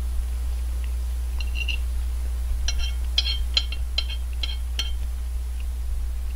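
A metal spoon clinking against a ceramic plate, a couple of light taps about a second and a half in, then a run of about six sharper ringing clinks as curry and rice are scooped up. A steady low electrical hum runs underneath.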